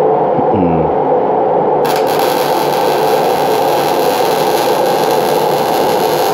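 MIG (gas metal arc) welding arc struck about two seconds in, then a steady hiss and crackle as the bead is run, sounding pretty good. Underneath is the steady noise of a running fume extractor.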